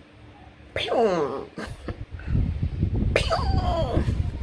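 Two short vocal outbursts from a person, about two seconds apart. Each starts suddenly and slides down in pitch. A low rumbling handling noise runs under the second half.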